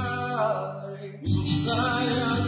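Worship song played live: male voices singing to a strummed acoustic guitar and banjo. A held note fades away about a second in, then the strumming and singing come back in strongly.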